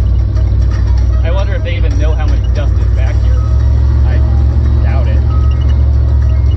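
Heavy, steady low rumble of wind and road noise from a chopped-roof Lincoln driving a rough dirt road, with music with a singing voice heard over it.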